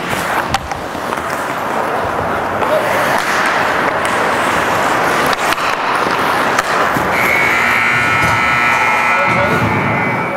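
Ice hockey play: skates scraping on the ice with sharp clicks of sticks and puck. About seven seconds in, the rink's horn sounds steadily for about three seconds as the clock runs out, signalling the end of the game.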